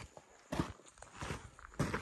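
Footsteps on dry, sandy dirt ground: two steps, one about half a second in and another near the end.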